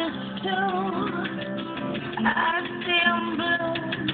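A short looped song mix playing back over studio monitors: a wavering sung melody over guitar and steady held notes.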